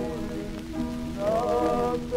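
Early acoustic-era 78 rpm shellac record of a tamburitza string ensemble with singers playing a slow Croatian folk song. Sustained chords give way about halfway through to a sung phrase that rises and bends in pitch. Steady surface hiss and crackle from the old disc run underneath.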